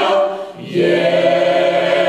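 Mixed choir of women's and men's voices singing in harmony; the sound dips briefly about half a second in, then the voices come back on a long held chord.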